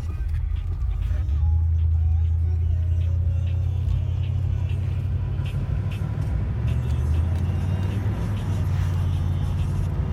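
1984 Hurst/Olds Cutlass's 307 V8 running, heard from inside the cabin as a steady low drone that grows louder about a second in and then holds.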